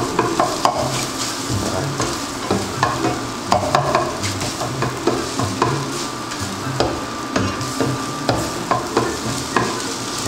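Eggs sizzling in a nonstick frying pan while being scrambled: a fork and then a spatula scrape and tap against the pan over and over, irregularly, over a steady sizzle.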